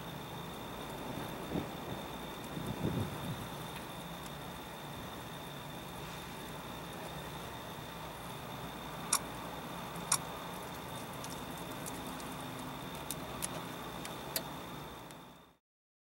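Steady faint background noise with a thin, steady high whine, a couple of soft low thumps early on and a few sharp ticks later, cutting off to silence just before the end.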